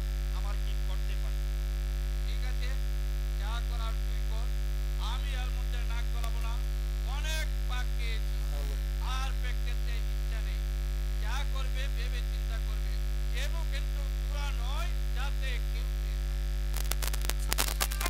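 Loud, steady electrical mains hum picked up by the stage sound system. A quick run of sharp clicks or knocks comes near the end.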